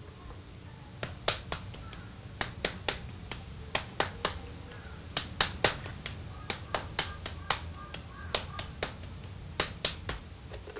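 Bare hands patting and tapping the clay wall of a hand-built raku tea bowl as it is shaped without a wheel. The sharp pats start about a second in and come in quick irregular runs, roughly three a second.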